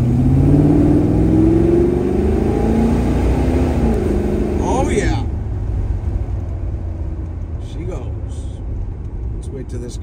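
502 cubic-inch big-block V8 of a 1972 Chevrolet Chevelle accelerating hard from inside the car, its pitch climbing for about four seconds. About five seconds in the revs drop away as the throttle is eased, and the engine settles to a lower, steadier cruise.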